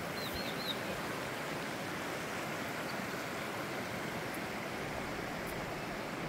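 Steady rush of a shallow mountain creek running over rocks, the North Fork of the Big Thompson River. A few quick high chirps sound about half a second in.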